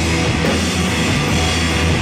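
Live rock from an electric guitar and a drum kit playing loudly together, cymbals washing steadily over sustained low guitar notes.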